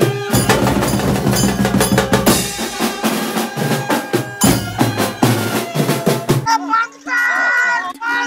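A band's snare- and tom-style drums and a cymbal played together in a fast, dense rhythm, which cuts off about six and a half seconds in. A quieter sound follows, a held low note under a pitched voice-like sound.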